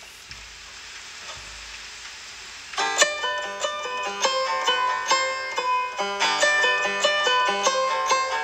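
A steady hiss opens the track, then a banjo starts a fast, bright picked melody about three seconds in.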